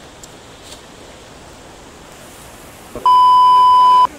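A loud, steady electronic beep, one pure tone held for about a second, starting about three seconds in and cutting off abruptly, over a quiet steady hiss.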